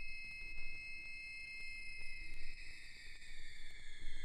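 Quiet tail of an electronic track: a lone high synthesizer tone with a few overtones, held and slowly sliding down in pitch as it fades, over a faint low rumble.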